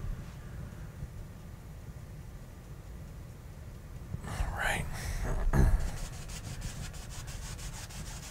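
Mostly quiet, with a brief murmured voice a little past the middle. Near the end, a stiff paint brush scrubs oil paint onto a stretched canvas in quick, faint strokes.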